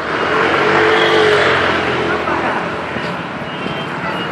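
A motor vehicle's engine passing close by in street traffic, swelling to its loudest about a second in and then fading away.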